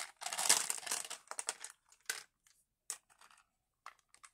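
Plastic beads clattering against a clear plastic storage container as they are scooped out by hand, a dense rattle for the first couple of seconds, then a few separate clicks.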